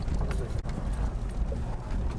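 A Jeep driving over a rough dirt road, heard from inside: a steady low rumble with irregular knocks and rattles from the jolting.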